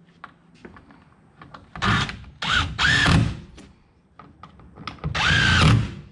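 Cordless Craftsman impact driver driving screws in three short bursts, each with a motor whine that rises and falls, the screws run in only snug. A few faint taps come before the first burst.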